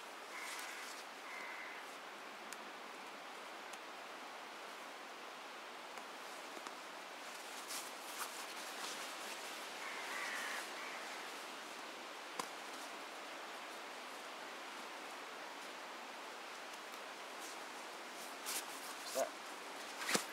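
Faint rustling and handling of a Czech army bedroll's waterproof outer as it is rolled and fastened by hand, with a few soft knocks and a click, over steady outdoor background hiss.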